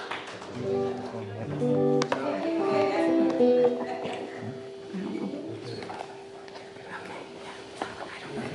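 Guitar played softly between songs: a short run of picked notes in the first few seconds over a single held note that rings on. Voices talk quietly in the second half.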